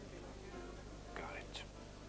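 Faint, low murmur of voices with a short hushed, whispery remark about a second in, over a steady low hum.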